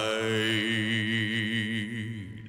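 A male singer holds a long final note with vibrato over a low sustained accompaniment, beginning to fade near the end.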